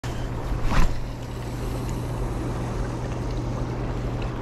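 Steady rushing of river water through a rapid, with a low rumble that may be partly wind on the microphone. A short sharp noise stands out a little under a second in.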